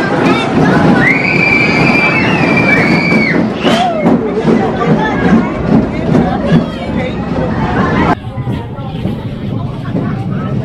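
Family roller coaster train rolling into its station while riders chatter and call out. A long high squeal lasts a couple of seconds about a second in, and the sound drops suddenly near the end.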